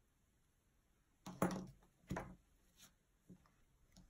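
Quiet handling of small tools and hair fibre on a tabletop: two short scuffing sounds, about a second and a half and about two seconds in, then a few fainter ones.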